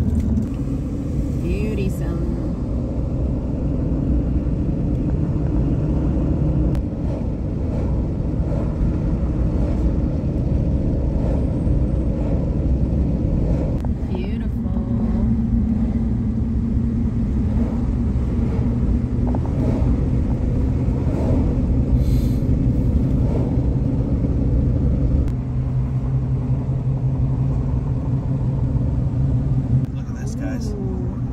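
Steady car road noise heard from inside the cabin while driving: tyres and engine giving a constant low rumble.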